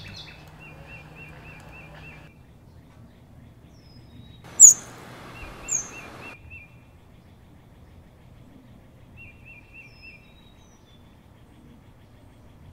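Forest birds calling: a short, quick chirping phrase repeats several times, and two sharp, high chirps around the middle are the loudest sounds, over a faint background hiss.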